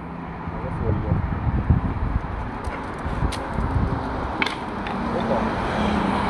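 Road traffic from a busy city street: a steady low rumble of passing cars, with a few light clicks scattered through it.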